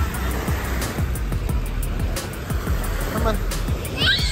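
Wind buffeting the microphone, a steady low rumble, with scattered small knocks of handling and a faint voice about three seconds in.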